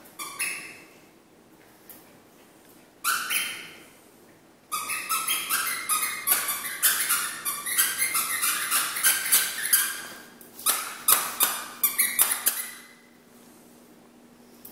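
A rubber squeaky toy being chewed by a Chihuahua puppy, squeaking. There are a couple of single squeaks first, then a long run of rapid squeaks from about five seconds in, and another burst near the end.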